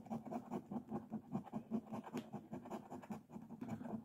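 A coin scraping the silver coating off the bonus spot of a paper lottery scratch ticket, in quick, even strokes about four a second.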